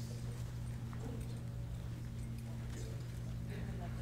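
Steady low electrical hum of the hall's sound system, with faint murmured voices in the background and scattered light knocks of footsteps on a hard floor.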